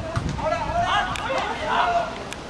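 Shouting voices at a football match, calls from players and onlookers with no clear words, with a few sharp knocks.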